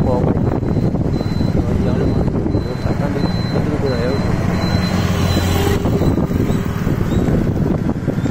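Motorbike engines running along a road, with wind on the microphone, and men's voices calling over the noise.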